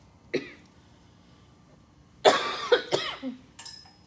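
A person coughing: one short cough about a third of a second in, then a louder bout of coughing about two seconds in that lasts about a second.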